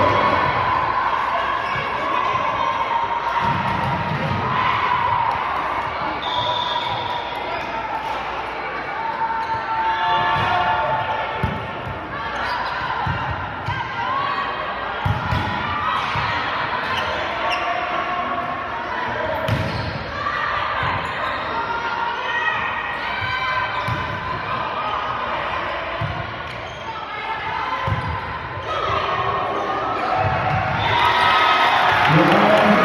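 Volleyball match in a gymnasium: scattered sharp thuds of the ball being served, passed and hit, over the steady indistinct chatter and calls of players and spectators.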